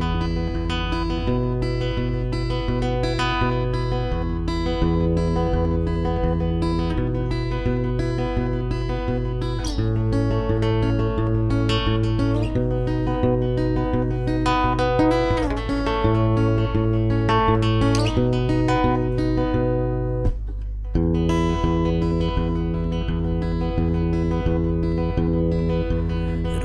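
Solo acoustic guitar playing the instrumental intro of an original song: chords in a steady rhythm, changing every few seconds, with a brief break about twenty seconds in.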